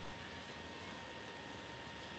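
Steady low hiss with a faint, steady high-pitched tone running through it: the background noise of an online call's audio. A brief soft low thump right at the start.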